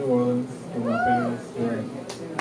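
Wordless human vocal calls, a few short ones with pitch swooping up and then down, the longest arching about a second in.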